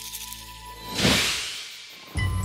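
A whoosh sound effect that swells to a peak about a second in and then fades away slowly, after a soft held note of background music.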